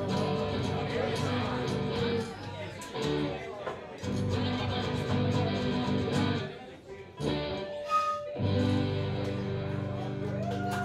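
Live band playing an instrumental passage on guitars, strummed chords with a steady low line. The playing drops away briefly about seven seconds in, then picks up again with a held high note.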